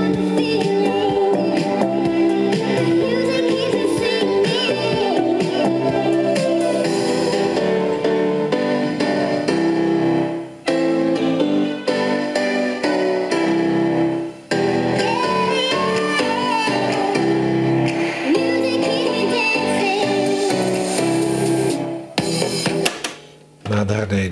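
Music with singing played from a cassette tape on a Silva New Wave 7007 boombox, heard through its built-in speakers while its graphic equalizer sliders are moved. Near the end the music stops, followed by a few clicks from the cassette deck's piano-key controls.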